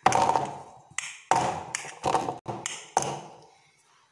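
Steel pressure-cooker separator pan full of cake batter tapped down on a kitchen counter, about six sharp taps each with a brief metallic ring. The tapping knocks trapped air bubbles out of the batter before baking.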